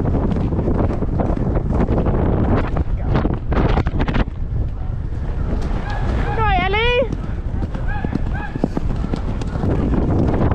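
Grey horse galloping on grass, its hoofbeats thudding under heavy wind buffeting on the microphone. About six seconds in a brief call with a wavering pitch cuts through, and two short calls follow.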